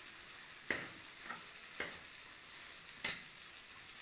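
A steel spoon stirs vermicelli upma in an aluminium pot, giving a few short scrapes and knocks against the pot. The loudest knock comes about three seconds in.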